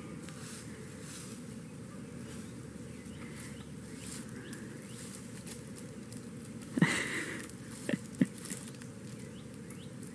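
Cats scuffling in dry leaf litter and scrabbling at a tree trunk: soft, scattered rustling, with a brief louder burst about seven seconds in and two sharp clicks just after.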